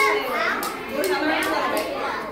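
Young children chattering and calling out to each other as a group.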